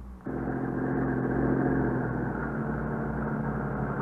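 Radio-drama sound effect of a car engine running. It cuts in suddenly, hums steadily and shifts pitch a little about halfway through, heard through the muffled, narrow sound of an old 1950s radio recording.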